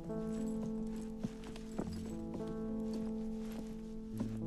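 Background score of slow, sustained chords, with a few soft footsteps and clicks over it, two sharper ones a little over a second in and just under two seconds in.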